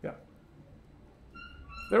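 A pause in a man's lecture in a classroom. There is a brief, faint vocal sound at the start, then quiet room tone, then a faint high squeak-like tone from about a second and a half in, just before he starts talking again.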